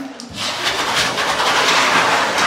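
Electric hand dryer starting up about a third of a second in and running with a loud, steady rushing blow that builds as it comes up to speed, echoing in a small tiled room.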